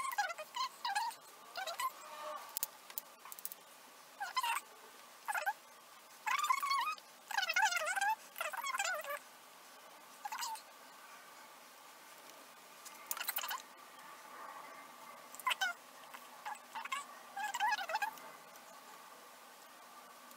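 An animal's high-pitched, wavering cries in short bursts, many in the first nine seconds and a few more later.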